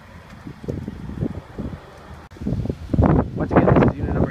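Wind buffeting a handheld microphone, with low rumbling handling noise; the gusts get much louder about halfway through.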